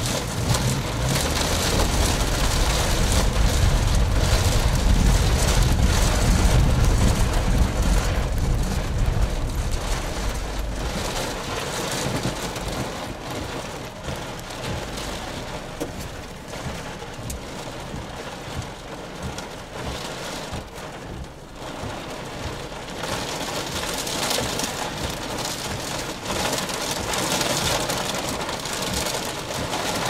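Strong wind from a nearby tornado buffeting the microphone, with rain pelting the vehicle. A heavy low rumble dominates for about the first eleven seconds, then eases, leaving lighter rushing wind and a patter of hits.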